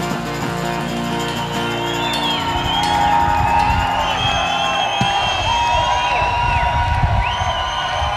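A live band holds its closing chord, with bass underneath, until it stops about two and a half seconds in. Then the crowd cheers, claps and whistles.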